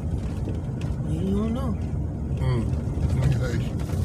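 Steady low rumble of a vehicle driving, heard from inside its cabin, with a couple of short murmured vocal sounds from the occupants.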